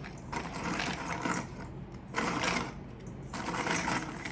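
Crisp biscuits handled and dropped into a steel mixer-grinder jar, clattering and scraping against the metal in a few bursts of rapid clicking.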